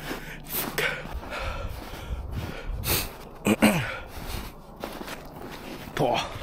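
Footsteps crunching in snow, a few irregular steps, with breath noises and a short vocal sound falling in pitch about three and a half seconds in.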